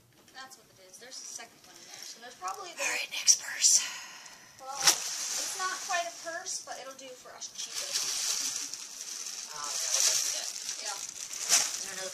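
Rustling and handling noise as a handbag and items from a plastic bin are moved about, with a couple of sharp clicks, under quiet, indistinct talking.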